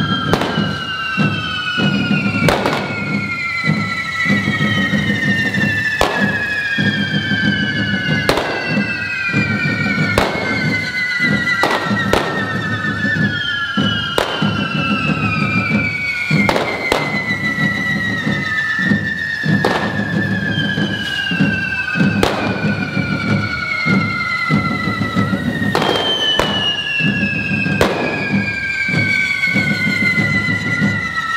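Hand-held correfoc fireworks (carretilles) spraying sparks: several overlapping whistles, each sliding slowly down in pitch over a few seconds, over a steady rushing noise. Sharp bangs go off about every two seconds.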